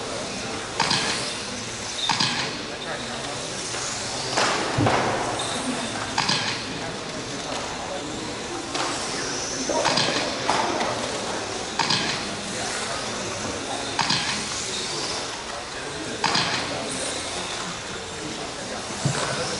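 Electric 1/12-scale RC racing cars running laps: a steady hiss of motors and tyres, with short louder swells every second or two as cars pass close by.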